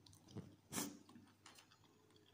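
A person chewing a mouthful of noodles with lips closed: a few short, soft wet mouth sounds, the loudest a little under a second in.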